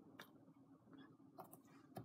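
Near silence: room tone with a few faint light clicks from a clear acrylic stamp block and stamp being handled.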